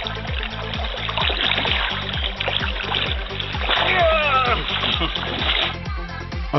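Electronic background music with a steady pulsing beat of about four a second. A splashing, rushing water noise runs over it from about a second in and cuts off near the end.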